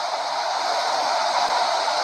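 Steady hiss from the recording's noise floor, with one faint click about one and a half seconds in.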